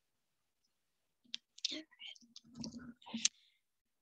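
Near silence, then from about a second in a handful of faint clicks, with faint voice sounds between them and a sharper click near the end.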